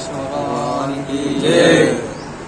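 A man chanting a mantra in long, held tones, with a louder phrase near the end.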